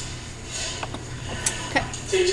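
A few light clicks and knocks, scattered over two seconds, over a steady low hum.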